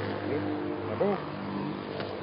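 A motor vehicle engine running steadily, with a couple of brief voice sounds over it.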